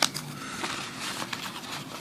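Paper and an envelope rustling and crinkling as they are handled, with a sharp click right at the start and a few irregular crackles after it.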